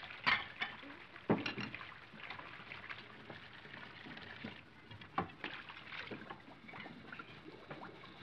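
Scattered light clinks and knocks, like dishes and cutlery at a breakfast table, over the steady hiss of an old film soundtrack.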